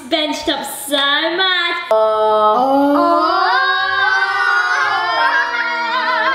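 Children's voices: a second or two of excited calling, then several voices singing long held notes together that slide up and down in pitch.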